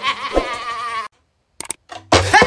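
A man's loud, wavering yell that breaks off about a second in, followed by a brief silence and a few short clicks near the end.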